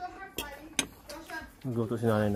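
Two sharp clinks of tableware, about half a second apart, among faint talking, with a voice growing louder near the end.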